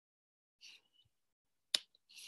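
A single sharp click of a computer mouse or trackpad near the end, with a faint short hiss about half a second in.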